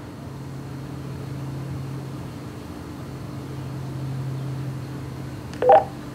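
Low steady hum from an idle Motorola XPR 4550 DMR mobile radio between transmissions, then a short two-note beep near the end as an incoming station's call comes through.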